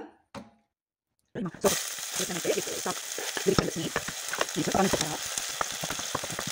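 Chopped onion sizzling in hot olive oil in a pot while being stirred with a spoon, the onion browning. The sizzle cuts in suddenly about a second and a half in, after a brief silence, and runs on steadily with small scraping clicks from the stirring.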